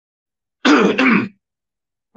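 A man clears his throat once, a short sound of under a second coming a little past half a second in, between pauses in the talk.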